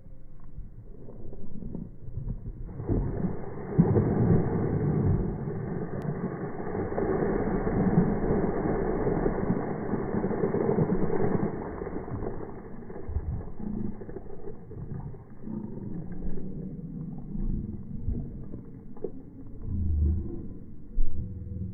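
Buckets of water thrown over a person, splashing onto him and the pavement. There is a loud rush starting about three seconds in that eases off around twelve seconds, followed by quieter, scattered noise.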